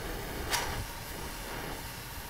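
One short, sharp chuff about half a second in, the small ignition of pyrolysis gases inside a wood-pellet gasifier, over a steady background rush.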